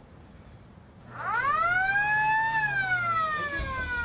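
Test-range warning siren: quiet for the first second, it winds up in pitch, peaks about halfway through, then slowly falls. It warns that the EMP pulse is about to be fired.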